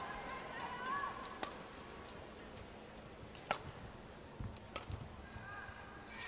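Badminton rally heard faintly: sharp racket strikes on the shuttlecock a second or two apart, the clearest about a second and a half in and at three and a half seconds, with faint squeaks of shoes on the court.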